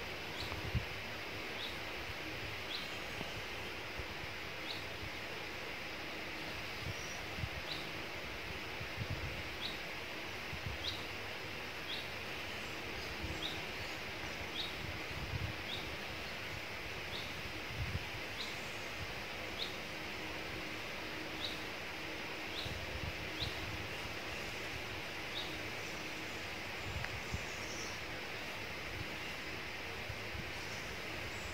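Woodland ambience: a bird repeats a short high call about once a second over a steady hiss, with occasional soft low bumps.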